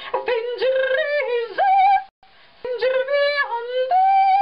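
A high voice singing held notes that leap abruptly between pitches, yodel-like, breaking off briefly about two seconds in before starting again.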